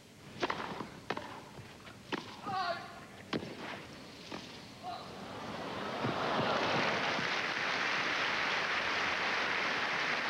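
Tennis ball struck back and forth by racquets on a grass court: a serve and rally of four sharp hits about a second apart, then crowd applause that rises from about five seconds in and holds steady.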